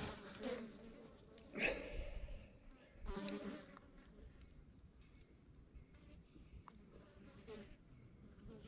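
Faint, brief buzzing of a flying insect close to the microphone, heard a few times, clearest about three seconds in.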